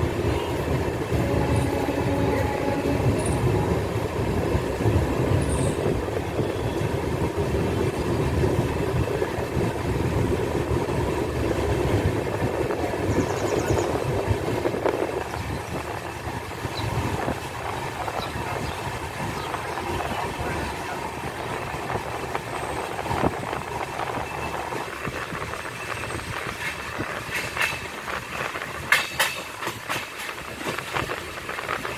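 A train running, heard as a steady rumble, heavier for about the first half and then fading, with a few sharp clicks near the end.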